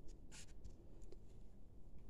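Faint rustling of hands handling crocheted yarn pieces, with one short rustle about a third of a second in.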